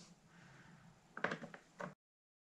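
Faint room tone, then a few light clicks and knocks about a second in and once more near the end, as a screwdriver is set to the screws on the underside of a Sinclair QL's plastic case. The sound cuts off abruptly just before the end.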